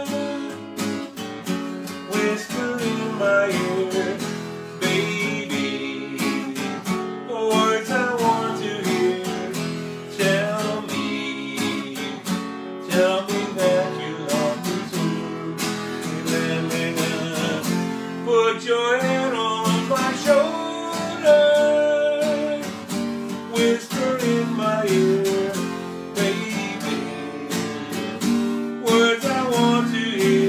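Acoustic guitar strummed steadily with picked melody notes, playing a song.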